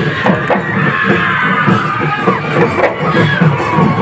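Live music from a passing street procession: drums beating in a quick, repeated rhythm under a high, wavering melody, over the noise of a crowd.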